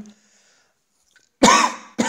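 A single short cough about one and a half seconds in, after a moment of near quiet.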